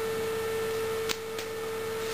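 A steady, mid-pitched electrical hum, with two faint clicks a little past halfway.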